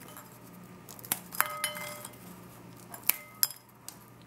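Light clinks of a porcelain plate as ladyfinger biscuits are picked up and set down on it, about five in two small groups, each with a short ring.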